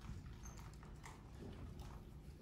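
A few faint footsteps on a hard floor, soft irregular taps over quiet room hum.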